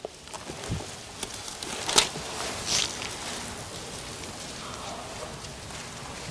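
Bible pages rustling as they are turned, with scattered soft clicks and rustles and one low soft thump a little under a second in.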